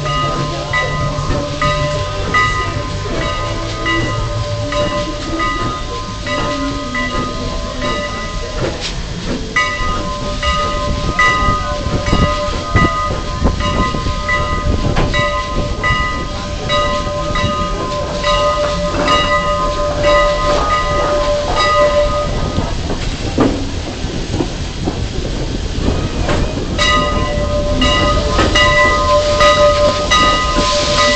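A train pulling out slowly, a bell ringing in a steady regular rhythm over the low rumble and clanks of the wheels on the track. The bell stops briefly about nine seconds in and again for a few seconds later on.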